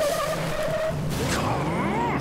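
Cartoon race-car sound effects: a hot rod's engine running hard with tires skidding over dirt, a steady loud rush throughout.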